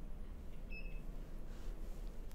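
Quiet room tone with a low steady hum, and a faint, brief high beep just under a second in.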